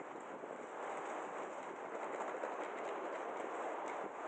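Steady outdoor city background noise, an even hiss with no single clear source standing out.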